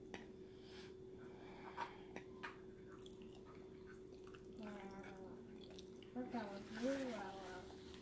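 Faint chewing and small mouth and fork clicks from a person eating a forkful of food, over a steady faint hum. A voice sounds briefly in the second half.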